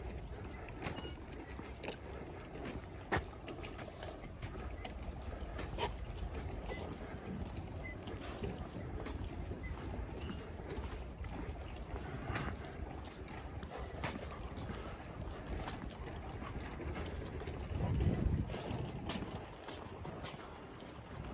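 Footsteps on stone paving, irregular clicks over a steady outdoor background noise, with a brief louder low rumble near the end.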